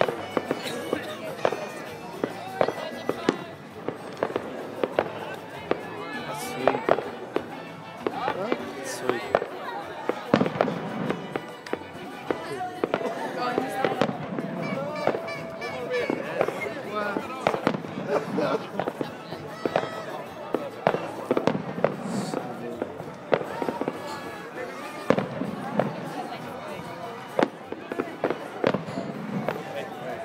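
Fireworks going off in a dense string of bangs and crackles, over a background of people talking and music.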